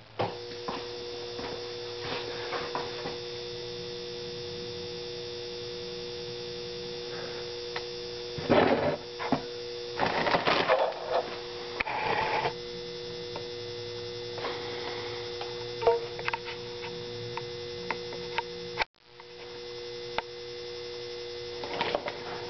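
Steady electrical hum with two fixed tones from the 6-amp charger powering a home-made HHO electrolysis cell. It comes on as the cell is switched on, while the cell draws about 7 amps. Scattered light clicks and a few brief louder noises about eight to twelve seconds in.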